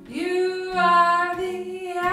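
A woman singing live, her voice sliding up into a long held note, over a steel-string acoustic guitar.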